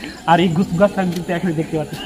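Men talking in the open: only voices, with no other sound standing out.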